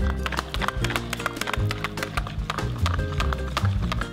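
A wire whisk clicking quickly and repeatedly against the bowl as egg-and-flour crepe batter is beaten, over background music.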